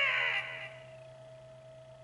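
Hokuto no Ken pachislot machine sound effect: a falling, voice-like cry that fades out within the first second, leaving a faint steady electronic hum.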